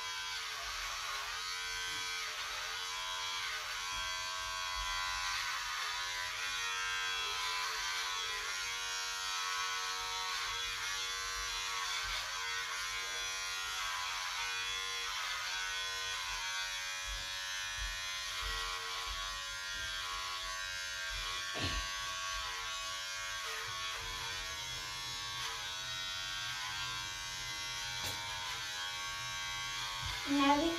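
Electric hair clippers running steadily while cutting a child's short hair, the buzz wavering slightly in pitch as the blades move through the hair. A single sharp knock about two-thirds of the way through.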